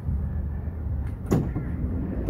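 A van door being worked: one sharp clunk a little past halfway, over a steady low rumble.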